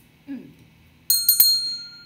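Small brass hand bell rung about a second in, three quick strikes close together, then a bright, high ringing that fades away.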